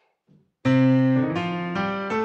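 Yamaha DGX-670 digital piano in a piano voice: after about half a second of silence a full sustained chord starts, followed by two chord changes.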